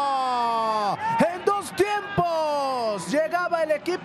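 A male sports commentator's long drawn-out shout over a shot on goal, falling in pitch through about the first second. Shorter excited calls follow, then a second long falling cry about three seconds in.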